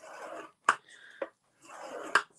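Ball-tipped scoring stylus drawn along patterned paper in the groove of a scoring board: a dry scraping in two strokes of about half a second each, near the start and near the end, with two sharp clicks in between.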